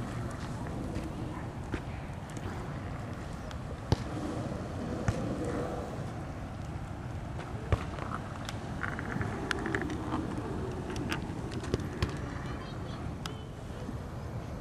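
Hamboard giant skateboard rolling on pavement: a steady low wheel rumble with a few sharp clicks.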